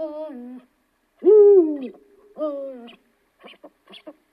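An owl hooting: three falling hoots about a second apart, the second the loudest, followed by a few short clicks near the end.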